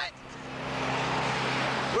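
A car passing on the road, its noise growing steadily louder over about a second and a half.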